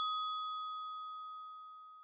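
A single bell-like ding, the notification-bell sound effect of a subscribe-button animation, struck once and ringing out with a clear high tone that fades away over about two seconds.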